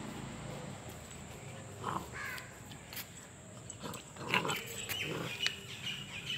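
Golden retriever puppy giving a few short, separate vocal sounds as it plays on a garden hose, with small clicks and rustles of it scrambling over the hose.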